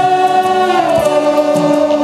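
Live gospel worship music: a group of singers holding long notes together over a band with electric guitars and drums, the sung notes stepping down in pitch a little before halfway.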